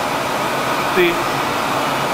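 Steady rushing air and machine noise from the beamline equipment, with one spoken word about a second in.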